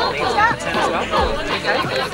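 Several young children chattering and laughing over one another, with music playing in the background.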